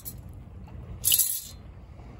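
A brief scraping rattle about a second in, from pebbles and small finds shifting in a perforated metal sand scoop, over a steady low outdoor rumble.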